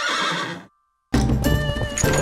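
A cartoon horse whinny with a wavering pitch, ending well before a second in. After a brief silence, loud music with percussion starts.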